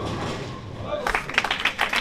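Tenpin bowling strike: the ball crashes into the pins and they clatter down, followed from about a second in by scattered clapping from onlookers.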